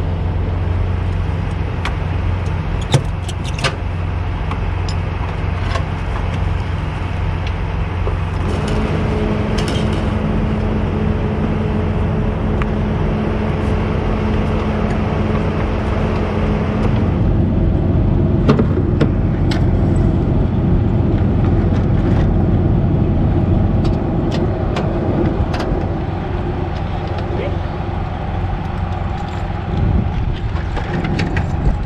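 Semi truck's diesel engine idling with a steady low hum. Scattered clicks and knocks sound over it, and a second steady hum joins for about eight seconds in the middle.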